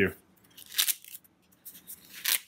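A nylon belt holster rustling and scraping as a small steel hatchet is drawn out of it: three or four brief, sharp scrapes with quiet gaps between.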